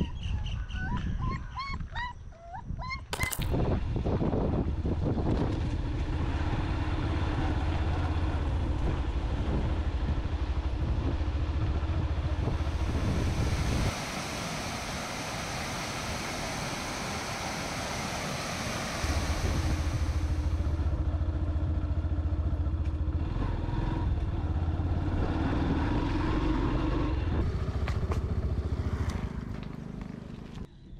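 A puppy whimpering in short high cries for the first few seconds, then a motorcycle engine running steadily as it is ridden. In the middle the engine gives way for a few seconds to the rush of water pouring through a weir's sluice gates.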